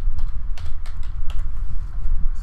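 Computer keyboard typing: a quick run of keystrokes as a word is typed, ending about three-quarters of the way through, over a low rumble.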